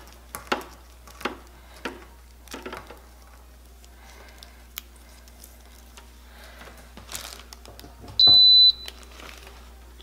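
Rustling and light clicks of an air purifier's power cord being unwound and handled, then, about eight seconds in, a single loud electronic beep of about half a second from the Okaysou H13 True HEPA air purifier as it is switched on.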